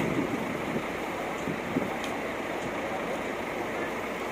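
Steady rushing noise of coach buses idling, with no single sound standing out.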